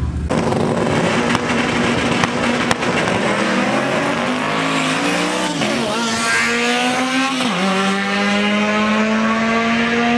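Drag-racing Honda Civic hatchback accelerating hard down the strip. The engine note holds steady for a few seconds, then climbs in pitch, drops sharply at a gear shift about seven and a half seconds in, and climbs again.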